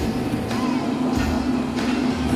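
Mobile crane's engine running with a steady low drone.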